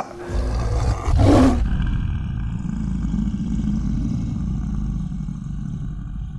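Lion-roar sound effect in a cinematic logo sting. It swells up to its loudest burst about a second and a half in, then a long low rumble with faint ringing trails on and fades out.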